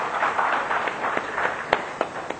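Audience applauding, the clapping strongest early and dying away near the end, with one sharp click just before it stops.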